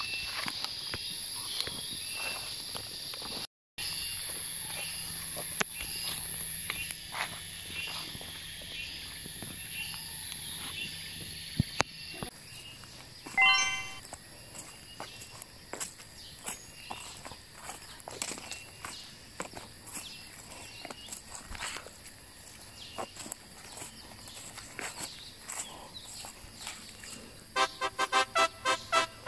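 Footsteps crunching and rustling through dry fallen leaves in an orchard, with a steady high insect drone behind. A short chiming call about halfway through. Music comes in right at the end.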